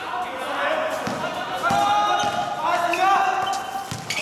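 Basketball dribbled on a hard outdoor court, a few separate bounces, with players' voices over it.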